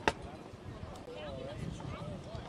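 Faint voices of people at a distance talking or calling out, over low outdoor background noise, with one sharp click or knock right at the start.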